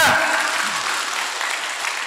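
Large audience applauding, the clapping easing off a little toward the end.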